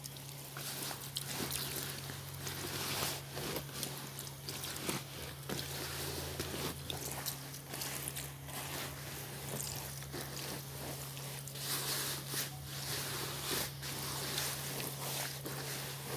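Wet laundry being handled in a washtub during rinsing: irregular rustling and squishing of soaked fabric with soft knocks, over a steady low hum.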